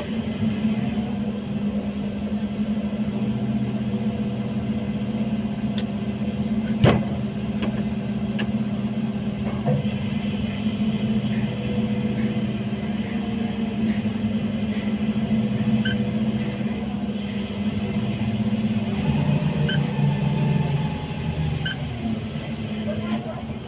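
Steady drone of heavy industrial plant machinery: a low hum with several held tones, with a single sharp knock about seven seconds in and a few faint ticks.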